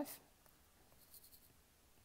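Faint scratch of a stylus writing on a tablet screen, a short stroke about a second in, otherwise near silence.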